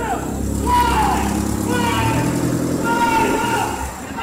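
Indistinct voices over a steady low rumble of a vehicle engine or traffic.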